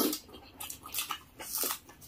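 Close-miked chewing and lip-smacking by people eating with their hands: irregular wet smacks and clicks, several a second.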